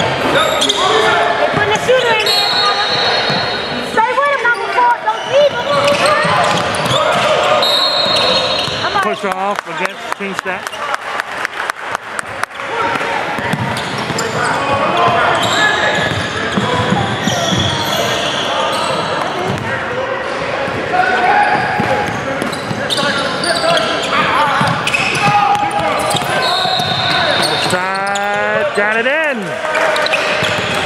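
Basketball dribbling and bouncing on a hardwood gym floor, with a run of quick bounces about ten seconds in. Players and onlookers call out, the sound echoing in the large hall, and sneakers squeak briefly a few times on the court.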